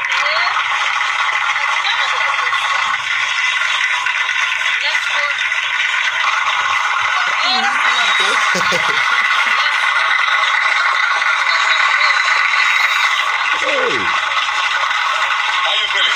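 Crowd cheering and clapping without a break, a loud steady din, as the winner is welcomed onto the stage; a man's brief laugh and greeting rise above it twice.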